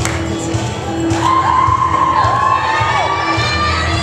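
An audience cheering and shouting over a recorded country song played for a lip-sync act.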